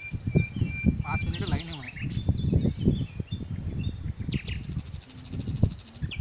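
Wild birds chirping and calling in short high whistles, over irregular low thumps and rumbling. A fast, even high-pitched buzz comes in near the end.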